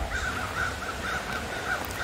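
A bird calling steadily in the background: a rapid series of short, repeated notes, about five or six a second.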